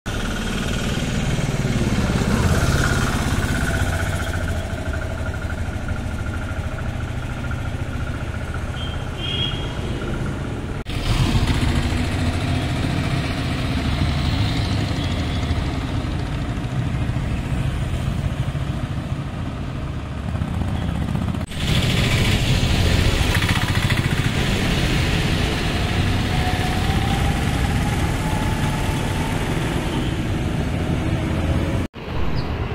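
Road traffic going by, mostly motorcycles, with engine noise throughout and a rising engine note near the end. The sound changes abruptly twice, about a third and two thirds of the way through.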